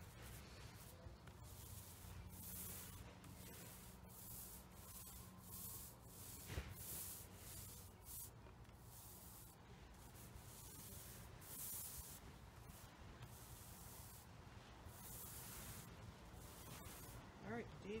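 Faint, repeated swishing strokes of a small paint roller and a paintbrush being worked over a fibreglass trailer panel, rolling on and tipping off paint.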